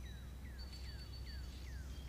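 Faint bird calls: a run of short whistled notes, each sliding downward, about three a second, over a thin steady high tone.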